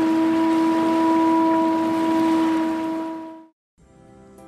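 A ship's horn holding one long steady note over a rushing hiss like sea noise, fading out about three and a half seconds in.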